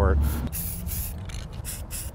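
Aerosol spray-paint can hissing in several short bursts, over a low steady background rumble.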